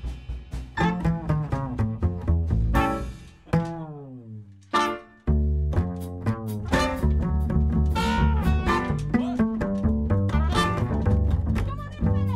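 Upright double bass solo, plucked pizzicato: a run of separate notes, then a long downward slide in pitch, a short pause, and the plucked line picks up again.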